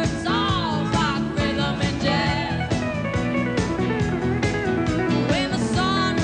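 Country band playing live: a pedal steel guitar's gliding, bending lead lines over drums and acoustic guitar.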